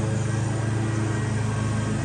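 Small handheld two-stroke lawn-tool engine running steadily at low, even speed.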